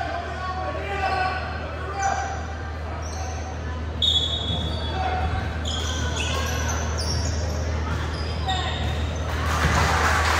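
Sounds of a basketball game on a hardwood gym floor: sneakers squeaking in short high chirps, the ball bouncing, and voices echoing around the hall over a steady low hum. Near the end the background noise swells.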